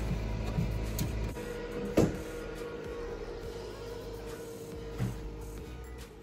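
A desktop PC being switched on inside a photo booth: a sharp click or two from the power button and handling, then a steady hum from the computer starting up, under background music.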